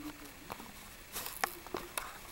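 Plastic blister packaging of a carded diecast toy truck crackling and clicking faintly as fingers pry it open, with a few small clicks in the second half.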